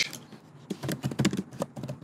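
Typing on a computer keyboard: a quick run of keystrokes that starts a little under a second in, entering a short commit message.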